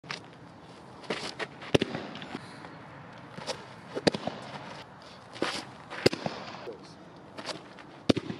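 Baseballs pitched one after another at a nine-hole net strike-zone target: a short scuff of the pitcher's stride on the dirt mound, then a sharp crack as the ball hits the target. This repeats about every two seconds, with the three loudest hits near two, four and six seconds in.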